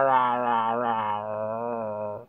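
A man's voice holding one long, low 'ahh' on a nearly steady pitch that sags slightly and softens toward the end.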